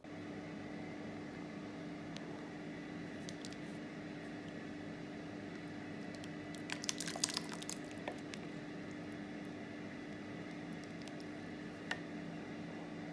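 A plastic ladle stirring and lifting thick, chunky soup in a slow cooker's crock, with a few sharp clicks of the ladle against the crock about seven seconds in. A steady low hum runs underneath.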